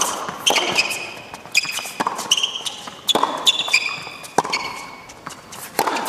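Tennis rally on an indoor hard court: racket strokes on the ball about every one to one and a half seconds, with short high shoe squeaks on the court between them.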